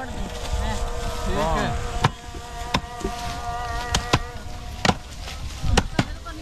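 Hand tools chopping through green fodder stalks: about six sharp, irregular cutting strokes in the second half, over a steady faint hum and low voices.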